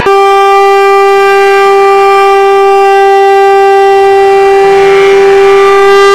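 A conch shell (shankha) blown in one long, steady note as part of the dance music track.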